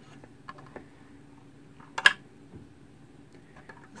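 Small plastic clicks and handling noise as an RJ45 Ethernet plug is worked into a jack on the back of a Verifone VX 820 Duet base station, with one sharper click about two seconds in, over a faint steady hum.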